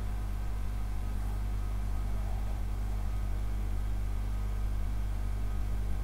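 Steady low hum with a faint hiss underneath, unchanging throughout: background noise of the recording.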